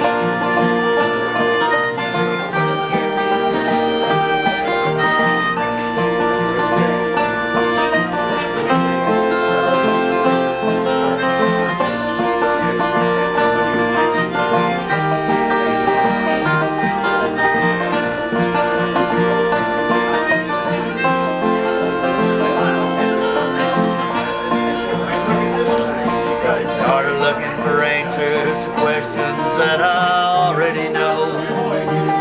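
Instrumental break in a country-folk song: harmonica on a neck rack plays the lead over strummed acoustic guitar, open-back banjo and autoharp.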